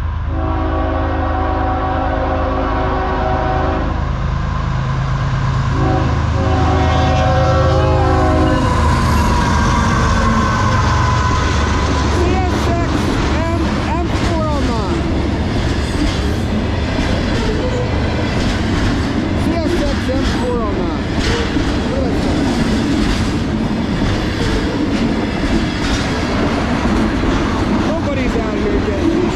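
CSX freight train's locomotive air horn sounding for a grade crossing: a long blast, a short one and another long blast, over the low drone of the diesel locomotives as they approach. The long manifest train's freight cars then roll past, wheels clacking over the rails with brief squeals.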